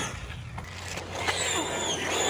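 Redcat Kaiju RC monster truck's brushless electric motor and drivetrain whining under throttle as the truck drifts. It is fairly quiet at first, then about a second in it revs up with a gliding high-pitched whine.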